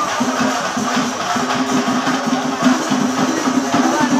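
Singari melam percussion ensemble of chenda drums and cymbals playing a fast, steady beat.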